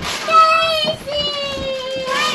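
A young child's high voice singing out two drawn-out notes, the second held for more than a second and sliding slightly downward.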